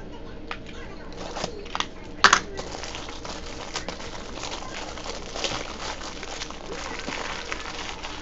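Trading cards and their plastic sleeves being handled: light crinkling and scraping with scattered clicks, the sharpest about two seconds in.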